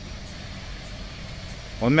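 Steady low background rumble with a faint hum, then a man begins speaking in Hindi near the end.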